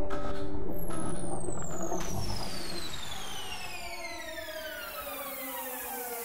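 Animation sound effect: after a sudden hit at the start, several whistle-like tones slide slowly down in pitch together over about five seconds, growing fainter as they fall.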